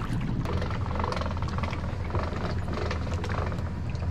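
Pickup truck engine running low and steady as it backs an empty boat trailer toward the water.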